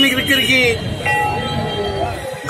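A man speaking into news microphones for the first part, then a steady pitched tone that starts about halfway through and holds for about a second.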